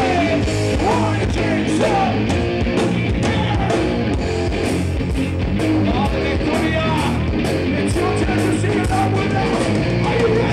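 Thrash metal band playing live: loud distorted electric guitars over drums, with regular cymbal hits and sliding guitar lines, heard from within the crowd.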